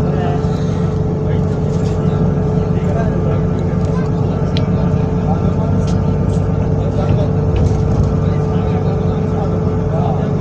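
Cabin noise of a moving metro bus: a steady low engine and road drone with a constant hum, and small rattles and clicks scattered through it.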